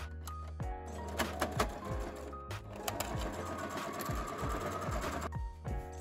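Electric sewing machine stitching a seam through layered fabric, starting about a second in, running steadily and stopping about five seconds in.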